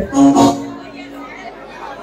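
An actor's voice over a stage public-address system: a loud line that ends on one drawn-out note held for about a second, then a quieter stretch.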